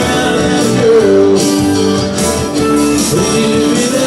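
A live band plays amplified through a PA: electric guitar and electric bass guitar, with a voice singing over them.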